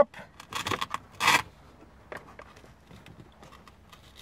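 Velcro hook-and-loop pads on the back of a handheld scan tool pressed onto matching pads on a car dashboard: a few short crackly rasps in the first second and a half, the loudest just over a second in, then faint plastic handling ticks.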